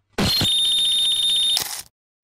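An edited-in electronic sound effect: a loud, steady high-pitched beep with a low thump at its onset, lasting about a second and a half before fading away quickly.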